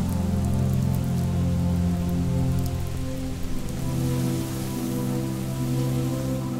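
Steady rain falling, under a music score of held low chords that shift about halfway through.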